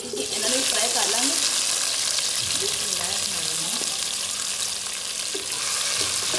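Sliced eggplant dropped into hot oil sizzles loudly the moment it lands, then keeps frying with a steady sizzle. Near the end the slices are stirred with a wooden spatula.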